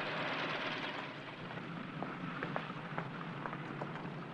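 Steady outdoor background hiss, fading a little over the first second, with scattered light clicks and taps of footsteps and luggage being handled.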